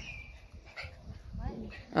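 Pomeranian whining: a thin, high whine that dips slightly at the start, and a shorter whimper a little past the middle.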